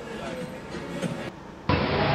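Faint low background sound, then near the end a loud steady rushing noise starts abruptly.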